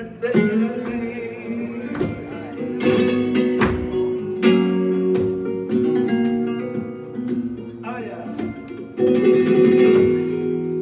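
Flamenco guitar playing a soleá, held notes broken by several sharp strummed chords.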